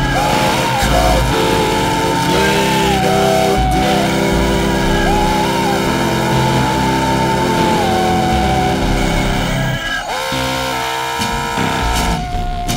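Synthesizer noise music: held electronic tones that slide up and down in pitch over a dense layer of hiss and blocky, uneven low bass pulses. About ten seconds in the bass drops out and a new held tone comes in.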